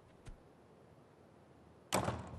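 Quiet room tone with a faint tick early, then a sudden sharp whoosh-like hit just before the end, fading quickly.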